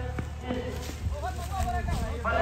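Men's voices talking among the spectators at a cricket ground, with a few light clicks.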